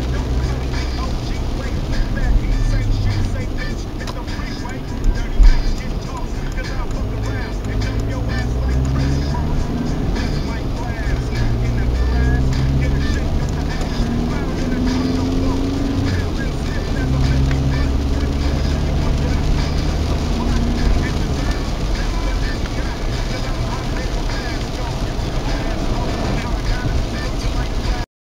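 Inside a car driving in the rain: a steady rush of road and engine noise, with a car radio playing voice and music. There is one sharp loud hit about five and a half seconds in.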